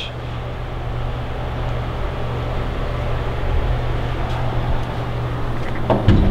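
A steady low hum with a rumble beneath it, unchanging throughout.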